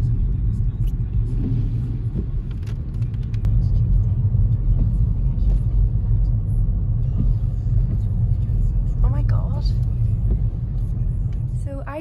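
Steady low rumble of a car being driven, heard from inside the cabin, with a few faint clicks.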